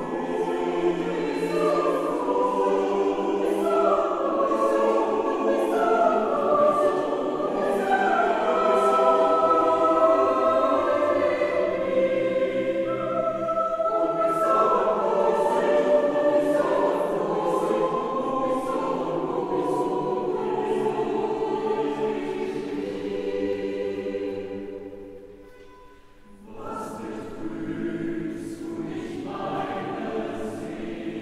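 Mixed choir of men's and women's voices singing sacred music a cappella in a large church, several parts moving together in sustained phrases. Near the end the voices drop away for a breath-length pause, then the singing resumes.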